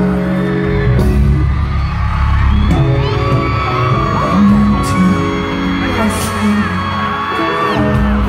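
Loud live concert music from an arena sound system, with a deep bass line, heard through a phone's microphone. From about three seconds in, the audience screams in long, high-pitched cheers, and a few sharp percussive hits cut through.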